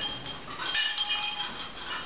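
Small hard objects clinking against each other as they are handled, each clink ringing briefly on a high tone, with a cluster of clinks about a second in.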